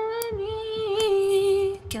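A woman's voice holding one long sung note at a steady pitch with a slight waver, one layer of a stacked vocal harmony. It breaks off just before the end.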